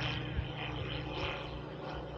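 Quiet open-air background: a steady low rumble and hiss with faint, distant voices.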